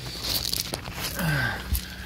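Clothing rustling and gravel crunching and scraping as a person crawls out from under a vehicle and gets up, with a few small clicks and a short low falling sound partway through.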